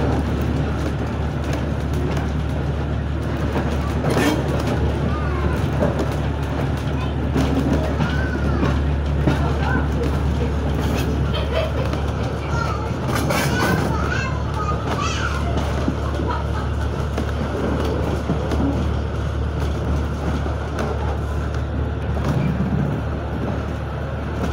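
An old wooden railway carriage running along the track, giving a steady low rumble throughout, with passengers' voices talking in the background.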